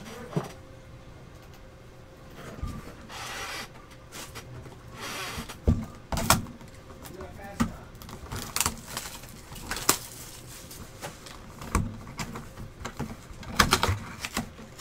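Cardboard trading-card hobby box being handled and torn open along its perforated panel: two short bursts of cardboard rustling a few seconds in, then a series of sharp clicks and knocks as the box is worked open.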